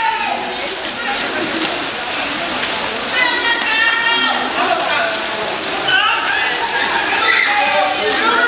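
Echoing indoor pool hall noise: a steady wash of splashing water from water polo players swimming, with distant shouting voices a few seconds in and again later.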